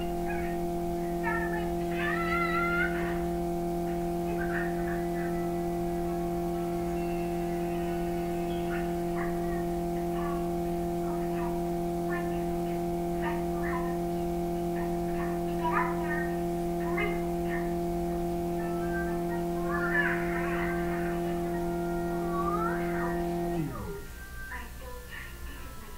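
Cartoon soundtrack playing from a TV: one long held chord with short animal squeaks and chirps scattered over it. Near the end the chord slides down in pitch and cuts off.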